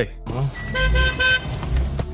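Car horn sounding three short toots in quick succession, over the low rumble of a car.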